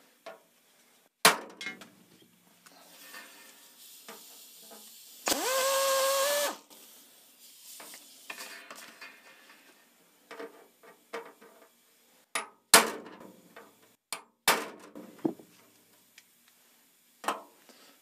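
An air drill runs for about a second, its pitch rising as it spins up, drilling out a blind rivet in aluminium sheet. Sharp metal taps come before and after it, once near the start and several times near the end: a pin punch being struck to drive the drilled rivet out.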